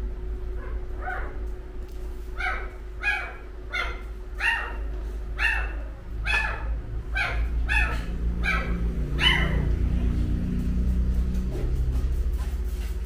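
A dog giving a string of short, high-pitched yelps, each dropping in pitch, about one a second and a dozen in all, stopping about nine seconds in. A low rumble runs underneath and grows near the end.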